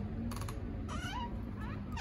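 Door hinge squeaking as a door is eased open: three short squeaks, each rising in pitch.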